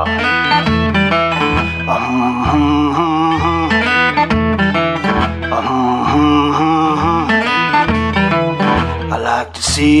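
Acoustic guitar playing a blues riff: a repeated low bass note under wavering, bent lead notes. A man's voice comes in singing near the end.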